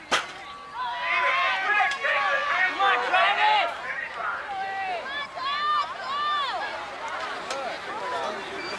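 A BMX starting gate drops with a single sharp clack right at the start, then spectators shout and yell excitedly without a break as the riders race away.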